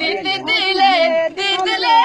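A woman singing a Dogri folk song in a high voice, unaccompanied, the melody bending and held on long notes, with a brief break for breath just after a second in.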